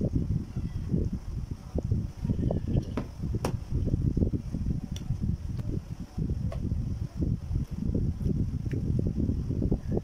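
A low, uneven rumble, with a few light clicks of a metal spoon against a bowl as food is eaten from it.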